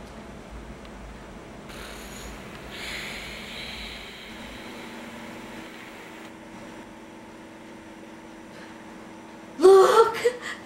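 A woman dozing in a quiet room, breathing softly with a couple of faint breaths. Near the end she gives a sudden loud exclamation that rises in pitch as she starts awake.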